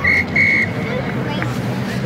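Referee's whistle: two short blasts, the second a little longer, over background crowd chatter.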